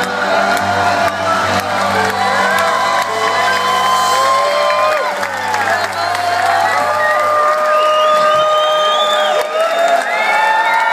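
A live rock band with electric guitars and bass lets its last chord ring out at the end of a song. The low bass notes stop about seven seconds in, while the audience cheers and whoops over the music.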